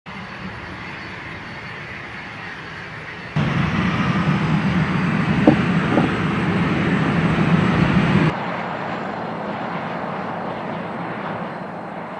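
NASA T-38 Talon jet trainer's engines running as it rolls along the runway and taxis, a steady jet rush. The sound jumps louder about three seconds in and drops back about eight seconds in, with two short chirps in between.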